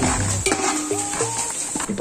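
Sliced onions sizzling as they fry in oil in a metal pot, stirred with a perforated metal ladle that scrapes the pot, as they brown toward golden.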